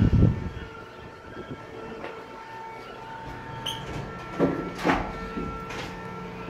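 Steady hum of shipboard ventilation machinery, several even tones held throughout, with a low thump right at the start.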